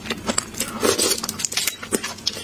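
Close-miked wet mouth sounds of a person eating raw shrimp: rapid small clicks, smacks and crackles of chewing and sucking, with a sharper click near the end.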